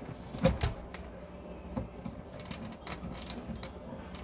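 Irregular clicks and knocks, the loudest about half a second in, over a faint steady low hum.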